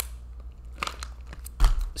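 A few scattered sharp clicks from working a computer mouse, then a low thump near the end.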